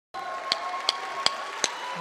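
Two wooden drumsticks clicked together four times in an even count-in, about two and a half clicks a second, counting off the start of a song.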